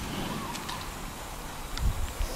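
Outdoor ambience on an open beach: wind rumbling on the camera microphone over a steady background hiss, with a low bump near the end.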